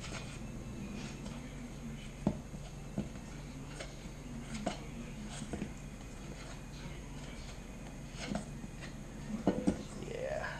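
Hands kneading a stiff honey and powdered-sugar candy paste in a metal bowl: scattered soft clicks and knocks against the bowl, with a small cluster of them near the end, over a steady low hum.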